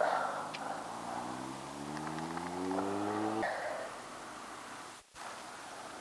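A man's long, low vocal sound, slowly rising in pitch for about three seconds before stopping abruptly.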